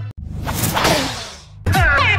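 A whoosh transition effect between songs: the music stops suddenly, then a rush of noise swells and fades away. About one and a half seconds in, an electronic dance track with sliding synth notes and a heavy beat starts.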